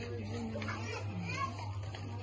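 Background voices, children's among them, talking off-mic over a steady low hum.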